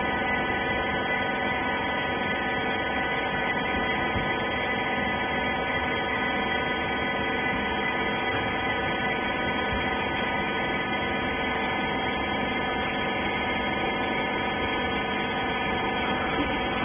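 Hydraulic wiper-rag baling machine running: a steady mechanical hum with several constant tones, no change in pitch or level.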